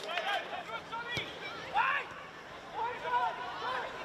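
Players shouting and calling to each other on a football pitch during live play, with a single sharp knock about a second in.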